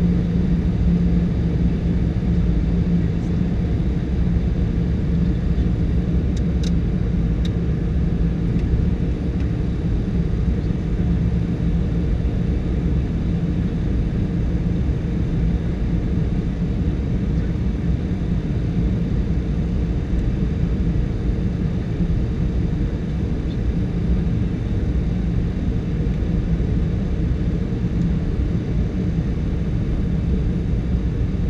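Steady in-flight cockpit noise of a Cessna Citation V: the drone of its twin Pratt & Whitney Canada JT15D turbofans mixed with the rush of air over the airframe, carrying a steady low hum. A few faint clicks come about six to seven seconds in.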